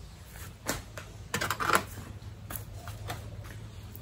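Terracotta plant pots being handled and moved among potted plants: a few light knocks and clicks, with a short burst of rustling about a second and a half in.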